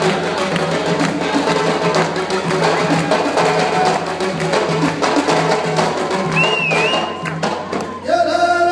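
Music with a steady percussive beat. A brief wavering high tone sounds near the end.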